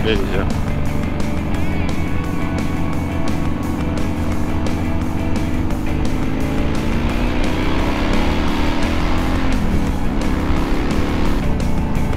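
BMW R1100GS boxer-twin engine pulling on the throttle, its pitch rising steadily for several seconds, then dropping at a gear change about ten seconds in and climbing again. Background music with a steady beat plays throughout.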